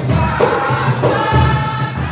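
A group of voices singing a Garifuna song over a steady beat of hand drums.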